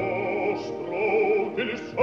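Operatic bass singing a sustained phrase with wide vibrato over orchestral accompaniment, the voice breaking briefly for consonants twice, in an old recording with the treble cut off.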